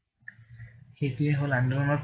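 A few faint computer-mouse clicks, then a man's voice holding one drawn-out hesitation sound at a steady pitch, starting about halfway.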